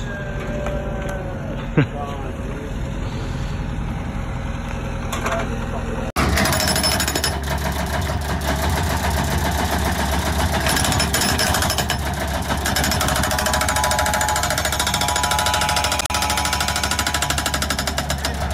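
A skid-steer-mounted hydraulic breaker hammering concrete in a rapid, unbroken stream of blows, starting abruptly about six seconds in. Before it there is a low steady engine hum and a short laugh.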